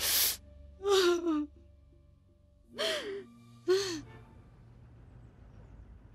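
An elderly woman's breathless vocal outbursts: a sharp gasp at the start, then three short wavering cries with falling pitch, the last near four seconds in, after which only a faint background remains.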